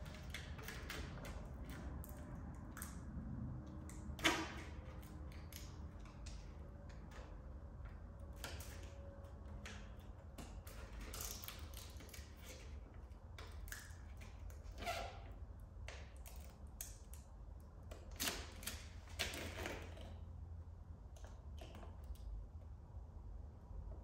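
Vinyl wrap film and its backing paper rustling and crinkling as they are handled, peeled and pressed onto a car's rear spoiler, with scattered small clicks and scrapes. There is one sharper snap about four seconds in and a few louder crinkles near the end, over a faint steady low hum.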